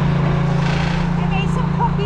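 Diesel engine of a ready-mix concrete truck running at a steady speed, a constant low drone.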